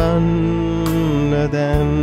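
Worship song: a man's voice holds a long note over electronic keyboard chords, with a soft percussive beat striking about once a second.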